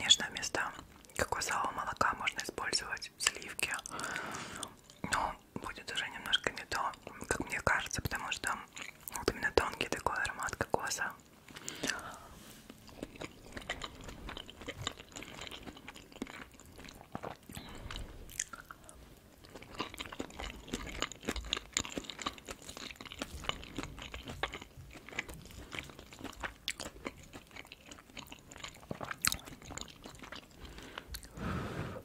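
Close-miked chewing of shrimp fried rice, with wet mouth sounds and light clicks of a fork scooping from the pineapple shell. It is louder for the first ten seconds or so, then quieter.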